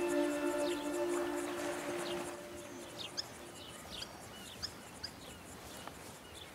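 Soft sustained music notes fade out over the first two seconds or so. After that comes quiet outdoor ambience with a few short, scattered bird chirps.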